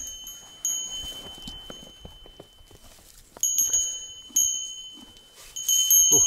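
A pony's small metal bell ringing as it eats hay: one clear ringing note that dies away, then is struck again about three times in the second half. Faint crunching of the hay being chewed comes through in the quieter stretch between.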